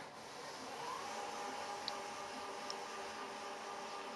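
Quiet room tone: a faint even hiss with a faint steady hum that comes in about a second in, and two tiny ticks near the middle.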